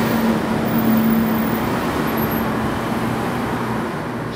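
Steady urban traffic noise, an even roar with a low steady hum running through it.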